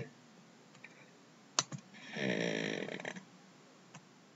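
A single sharp computer-mouse click about one and a half seconds in, then a soft breathy hum or exhale from a person lasting about a second, and a faint click near the end.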